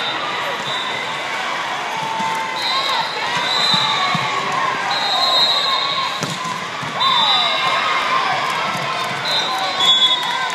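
Volleyball rally in a gym hall: players and spectators calling out over each other, with a laugh at the start, and the ball being struck, most clearly about six seconds in. Short high squeaks come and go through the rally.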